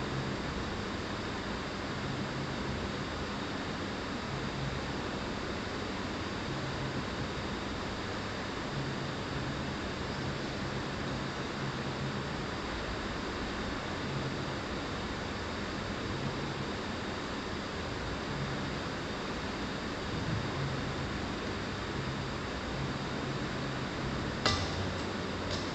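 Steady background hiss of room tone with a faint low hum, with no distinct events.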